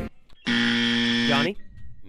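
Game-show answer buzzer sounding once: a steady electronic buzz about a second long that starts half a second in and cuts off sharply, a contestant buzzing in to answer.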